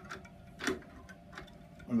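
A few light clicks, the loudest about two-thirds of a second in, from handling the aluminium rip fence of a Record Power BS250 bandsaw on its rail.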